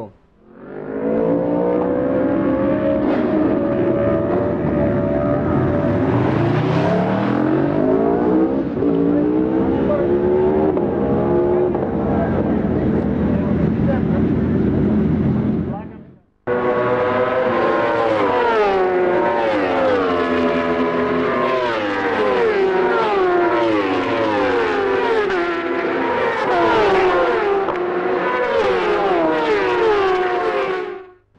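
Road-racing motorcycle engines revving and passing at speed, their pitch rising and falling repeatedly through gear changes. The sound cuts out briefly about sixteen seconds in, then resumes.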